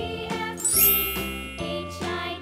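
Light children's background music with bell-like chiming notes, and a rising high shimmer a little before a second in.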